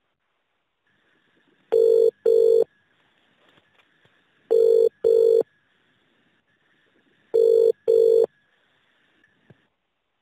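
Telephone ringing tone heard down the line while the call waits to be answered: three British-style double rings (brr-brr), about three seconds apart. A faint steady line whine sits between the rings.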